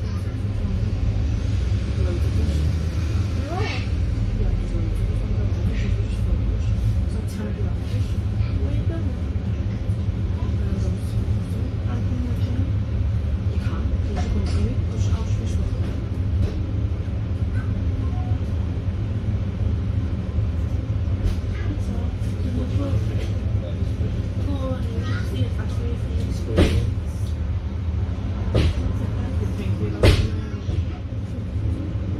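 Steady low rumble of a Volvo B5LH hybrid double-decker bus standing at a stop, heard from inside on the top deck, with a few short clicks and knocks, two of them near the end.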